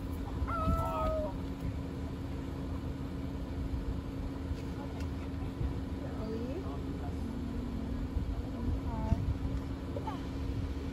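Car engine idling, heard from inside the car as a steady low hum. A few short, faint voices call out over it, the clearest about half a second in.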